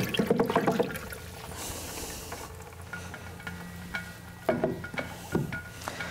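Liquid cow-dung fertiliser being stirred with a wooden stick in a plastic drum, the mixture sloshing as the ingredients are mixed into the water.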